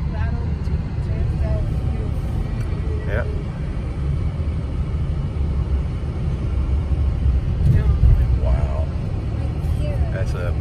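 Steady low road and engine rumble heard inside a moving car's cabin, swelling briefly about eight seconds in.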